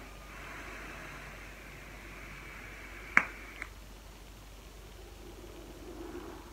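Long draw on an e-cigarette vape, a soft airy hiss of air pulled through the device for the first two seconds or so. A sharp click about three seconds in and a smaller one just after, then the vapour breathed out quietly near the end.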